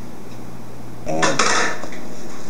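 A wooden spoon stirring stiff oat cookie dough in a large mixing bowl. About a second in comes a short burst of scraping against the bowl together with a brief voice sound, over a steady low hum.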